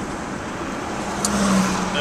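Steady rushing noise inside a vehicle's cab, with a brief click just over a second in and a short low hum near the middle.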